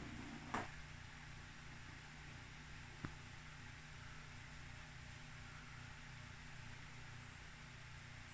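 Quiet room with a faint steady hum, broken by a short soft sound about half a second in and one light, sharp click about three seconds in, as a kitten plays at a plastic toy ball by a mirror.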